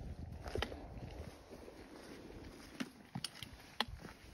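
A hiker walking with trekking poles: soft footsteps and a few sharp, separate taps of the pole tips over a low rumble.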